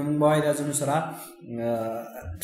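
A man speaking, with some drawn-out vowels and a short pause partway through.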